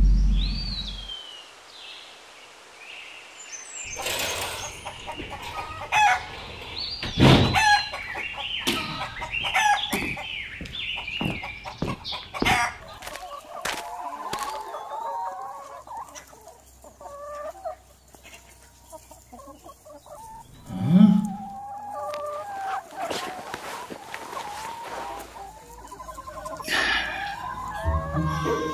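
A low rumble fades out in the first second. From about four seconds in, chickens cluck and call, with a rooster crowing among them.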